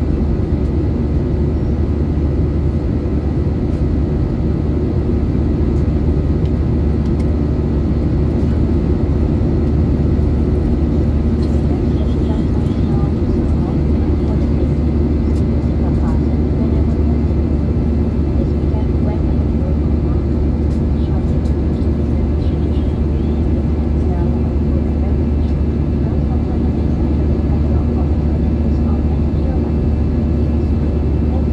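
Steady cabin noise inside an Airbus A320neo airliner: an even, deep rumble of engines and airflow with a few constant hum tones. Faint murmur of passenger voices in the background.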